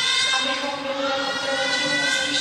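A woman's voice in long, steadily held pitches, chant-like.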